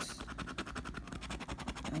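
A coin scraping the coating off a scratch-off lottery ticket in quick, repeated strokes.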